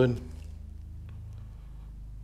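A steady low hum, with a few faint ticks. The end of a spoken word is heard at the very start.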